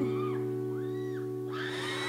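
Steel-string acoustic guitar chord ringing out and slowly fading in a pause between sung lines of a slow ballad.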